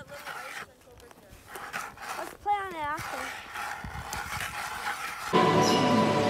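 Hand ice auger being turned through thick lake ice, its blades scraping and crunching in short uneven strokes, with a brief wavering vocal sound near the middle. About five seconds in, loud electronic music cuts in.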